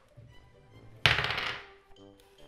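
A six-sided die thrown onto a wooden tabletop, landing about a second in with a sudden loud clatter of rapid rattling bounces that dies away within about half a second.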